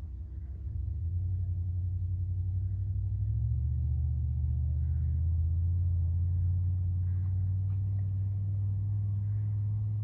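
A steady low droning hum, stepping up slightly in pitch about one second in and again around three and a half seconds.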